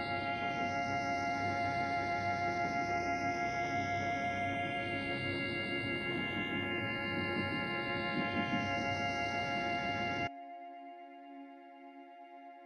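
Ambient music from the Cinescapes Pro Kontakt instrument on its 'World' sound, playing a generated MIDI sequence: layered held notes with a shimmering high layer. About ten seconds in it cuts off suddenly, leaving quieter held tones ringing.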